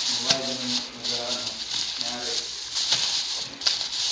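Thin clear plastic bag crinkling and rustling as it is handled, with scattered crackles, under a voice talking quietly.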